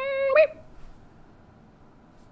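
A woman's held, hummed 'mmm' while she searches for a word, one steady tone for about half a second ending in a small upward slide, then quiet room tone.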